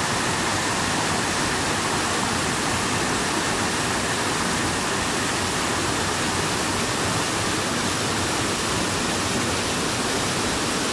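A waterfall heard close up: water falling over a rock ledge and splashing into a plunge pool, a steady, loud rush of white noise with no change in level.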